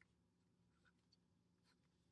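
Near silence, with a few faint strokes of a felt-tip marker on paper.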